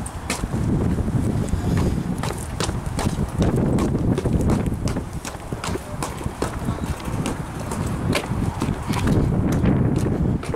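Footsteps on hard ground at a walking pace, with wind buffeting the microphone as a heavy, rough rumble.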